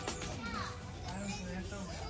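Children's voices in the background over music; the music's steady beat stops right at the start.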